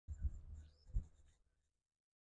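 Rustling and scraping on a body-worn microphone, with two dull thumps about three-quarters of a second apart, fading out after about a second and a half.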